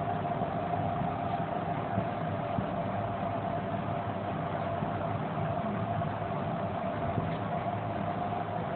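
Steady room background noise: an even hum and hiss with a faint constant whine, unchanging throughout and with no distinct events.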